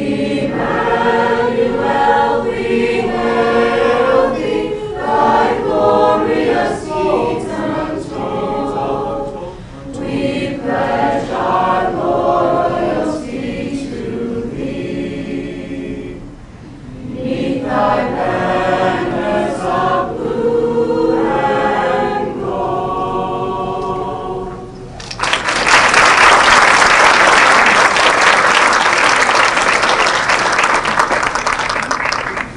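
A group of voices singing together in phrases with short breaks, about ten and sixteen seconds in. About 25 seconds in the singing ends and applause breaks out and carries on, louder than the singing.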